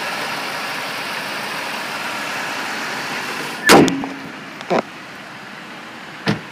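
GM 3800 V6 of a 2005 Chevrolet Impala idling steadily under an open hood. About three and a half seconds in, the hood slams shut with one loud bang, after which the idle is quieter. A lighter knock follows about a second later.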